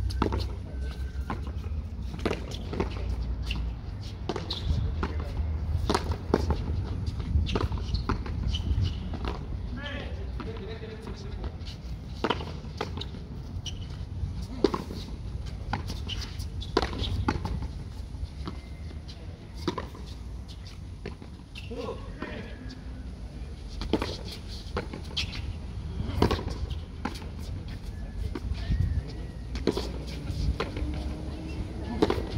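A frontón a mano rally: a hard handball smacked by bare hands and rebounding off the concrete walls and floor, giving sharp smacks at irregular intervals.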